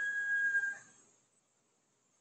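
The tail of a woman's drawn-out hesitation 'um', thinning to a faint, steady high tone and cutting off about a second in, followed by silence.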